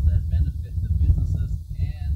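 A person talking, over a steady low rumble.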